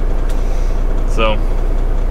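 Semi truck's diesel engine idling steadily, a low even rumble heard from inside the cab.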